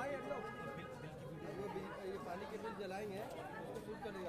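Indistinct chatter of several people talking at once in a room, with no single clear voice.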